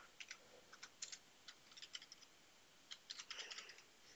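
Faint computer keyboard typing: irregular single keystrokes, then a quicker run of keys a little after three seconds in.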